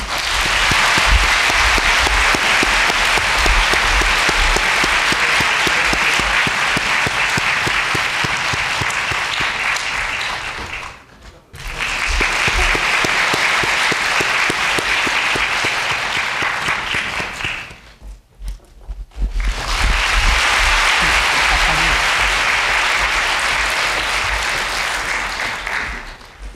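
A large audience applauding: dense, steady clapping that twice drops away briefly, about 11 and 18 seconds in, before picking up again.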